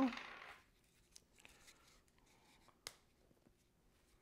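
Faint hand-handling sounds of thread and a spool at a sewing machine: a few soft clicks and one sharp click about three seconds in.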